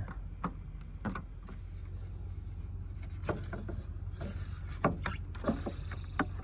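Front and back halves of a hard plastic (PC and TPU) waterproof phone case being handled and snapped together by hand: a scattering of light clicks and taps, several in the second half, over a low steady rumble.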